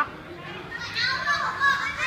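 Children's voices and calls in a play hall, faint at first and louder from about a second in.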